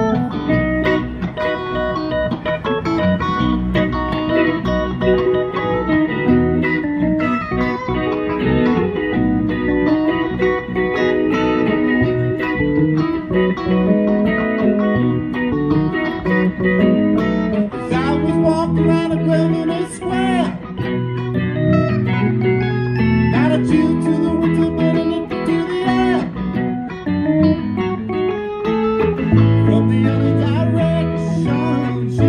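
A live band playing an instrumental passage on electric guitars, bass guitar and keyboard, steady and loud with no singing.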